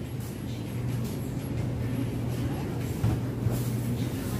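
Grocery store ambience: a steady low hum, typical of refrigerated produce cases, under general store noise. A couple of brief knocks come about three seconds in.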